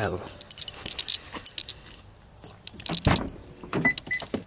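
Car keys jangling with handling rustle as the door of a 2012 Honda Accord coupe is opened, with a sharp clunk about three seconds in.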